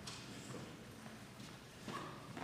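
Faint footsteps of people walking on a hard floor, with a few sharp knocks.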